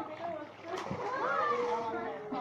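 Water splashing as several swimmers kick and paddle, with faint voices calling in the background.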